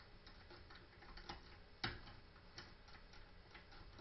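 Faint, irregular clicks of a half-diamond pick and tension wrench working the pin stacks of a five-pin deadbolt, with one sharper click a little before halfway.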